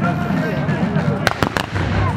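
Three black-powder musket shots cracking in quick succession about a second and a quarter in, a ragged volley from a line of soldiers, over the chatter of onlookers.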